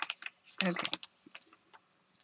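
Thin paper crinkling as it is peeled up off a gel printing plate: a crackle right at the start, then a few faint ticks.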